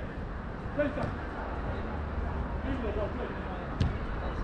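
Players' voices calling faintly across an outdoor soccer pitch over a steady low rumble, with one sharp knock near the end.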